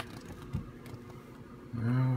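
Quiet room tone with a couple of faint clicks from handling, then a man's voice starting just before the end.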